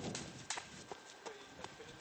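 Faint footsteps on gravelly dirt ground: about five light, evenly paced steps starting about half a second in.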